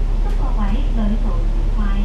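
Steady low drone of a KMB double-decker bus's engine, heard inside the cabin, with a woman's voice talking over it from about half a second in.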